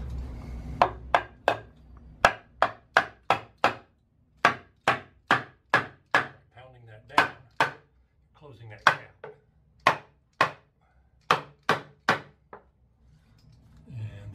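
Claw hammer knocking a cedar floor board into a tight gap: about twenty sharp wooden strikes in quick runs of three to six, with short pauses between.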